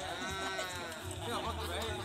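A spectator's long drawn-out shout that rises and falls in pitch over the first second, followed by short bits of voices.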